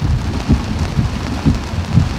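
Heavy rain falling on a car, heard from inside the cabin, with a low thud about every half second.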